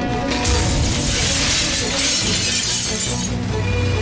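Glass shattering, a crash with a low thump that starts about half a second in and lasts nearly three seconds, over dramatic film background music.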